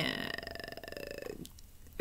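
A woman's voice holding a drawn-out, creaky hesitation sound that fades and stops about a second and a half in, followed by a small click.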